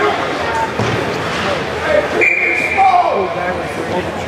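Spectators chattering in an ice hockey rink. About two seconds in, a single steady whistle blast sounds for just under a second: a referee's whistle.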